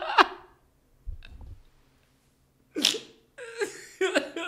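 A man laughing hard in sharp, breathy bursts with pauses between them, picking up into quicker laughter near the end. A soft low thump comes about a second in.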